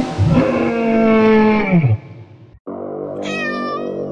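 Music ends with its held note sliding down in pitch and cutting off. After a brief gap, keyboard music starts, and about three seconds in a single short cat meow sounds over it, rising then falling in pitch.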